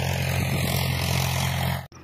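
Tractor engine running steadily, a low hum with a hiss over it, cutting off suddenly just before the end.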